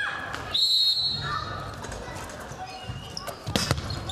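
Handball bouncing on a hard indoor court, a few sharp thuds close together near the end, heard in a large hall. A brief high-pitched tone sounds about half a second in.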